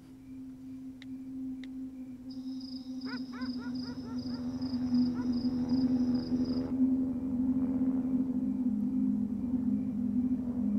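Horror film sound design: a low, steady droning tone that swells in loudness, with a high pulsing chirp of about three pulses a second through the middle and a few falling warbling tones.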